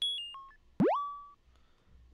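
Two short electronic bleep sound-effect samples previewed one after the other. The first is a quick run of high beeps stepping down in pitch. The second, just under a second in, is a fast upward pitch sweep that settles on a briefly held tone.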